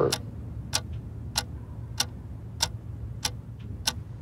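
Sharp, even ticks at a clock-like pace, about three every two seconds, over a low steady drone: a ticking pulse in the trailer's sound design.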